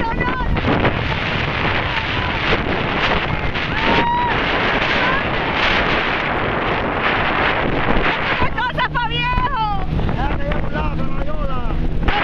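A jet ski under way: wind buffeting the microphone and rushing water noise, with the watercraft's engine droning steadily underneath. A rider's shouting voice cuts through about nine seconds in.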